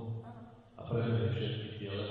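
Speech: a voice talking, with a short pause a little before one second in.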